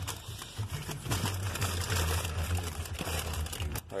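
Paper takeout bag crinkling and rustling as it is handled, over a low steady rumble in the car.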